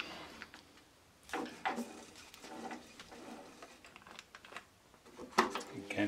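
Scattered clicks and knocks of hand-moving the stopped lathe's carriage and dial gauge along a test bar held in the three-jaw chuck. There is a cluster of knocks a little over a second in and a sharp click near the end.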